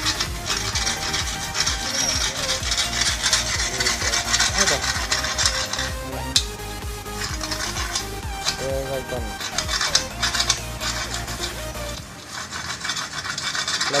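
Hand work on a steel frame tube: repeated quick scraping, rasping strokes of metal rubbed against metal.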